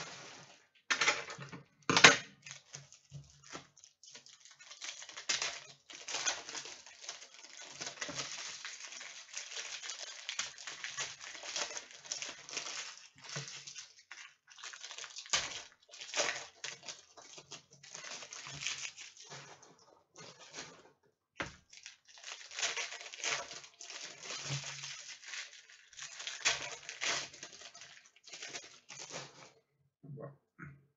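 Trading-card pack wrappers crinkling and tearing as packs are ripped open and cards handled, in irregular rustling bursts, with one sharp click about two seconds in.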